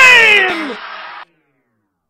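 Final held vocal note of a hip-hop song, sliding down in pitch and fading, then cut off abruptly just over a second in, leaving silence.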